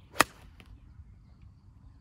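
Golf iron swung through and striking a golf ball off the fairway: a brief swish rising into one sharp click of contact about a fifth of a second in.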